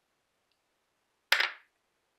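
A coloured pencil set down on a wooden tabletop: one short, sharp clack about a second and a half in, after near silence.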